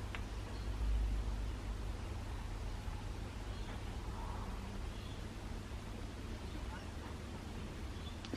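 Quiet room tone with a steady low hum and faint hiss, and no distinct event.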